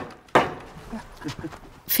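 A single hammer blow on the wooden frame of a crib shelter, one sharp knock about a third of a second in, followed by faint voices.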